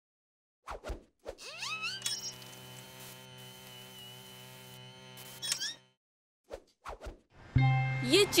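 Cartoon sound effects and a short musical sting: two pops, rising whistle-like glides, then a chord held for about three and a half seconds. After a brief gap come three quick pops, and background music starts near the end.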